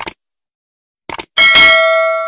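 Subscribe-button sound effect: a mouse click, then a quick double click about a second in, followed by a notification bell ding that rings on and slowly fades.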